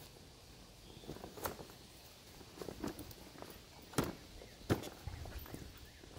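A large soft-sided fabric bag being handled and pulled open: faint scattered rustling with a few short, sharp clicks.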